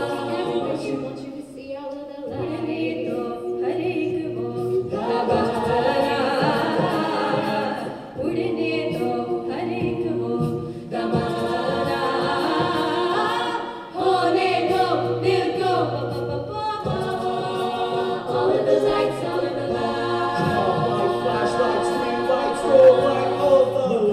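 A mixed a cappella group of men and women singing close chord harmonies over a sung bass line, with no instruments. The singing goes in phrases of a few seconds, each chord held, with short breaks between them.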